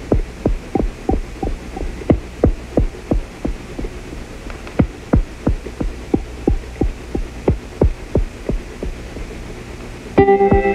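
Background electronic music intro: a steady low drone under an even, thumping pulse about three beats a second, like a heartbeat.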